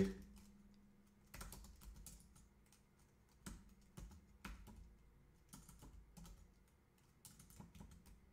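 Faint, scattered keystrokes on a computer keyboard, coming in small uneven groups as a web address is typed in.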